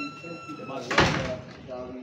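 A single sharp slam or bang about a second in, over people talking. A steady high-pitched tone stops just before it.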